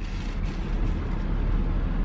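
Steady low rumble with a hiss over it, heard inside the cabin of an idling SUV.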